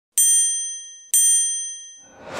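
Two identical bright chime dings, about a second apart, each ringing out and fading: the sound effect of an animated TV-channel logo intro.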